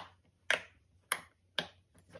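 Silicone pop-it fidget toy bubbles being pushed through by a finger, popping four times at about two pops a second.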